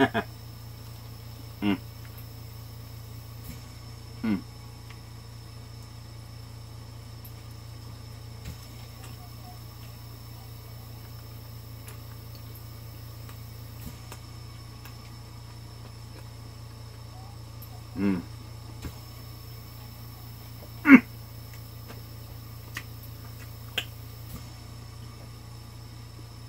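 A man eating a breaded chicken sandwich, quiet chewing over a steady low hum, broken by a few short 'mm' sounds and mouth noises, the loudest about 21 seconds in.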